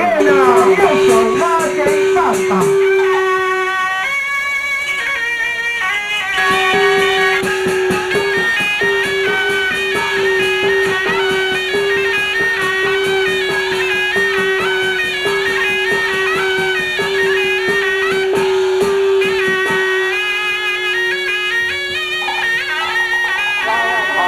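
Live instrumental accompaniment for traditional Taiwanese opera: a stepping melody over one long held note, with evenly spaced percussion clicks throughout.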